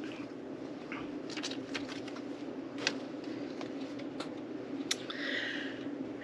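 Faint rustling and scattered small clicks as items are pulled out of a subscription bag and handled, over a low steady room hum.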